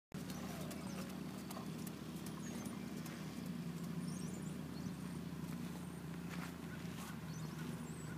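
A horse's hoofbeats on soft arena footing, faint and irregular, over a steady low hum, with a few faint high chirps near the middle.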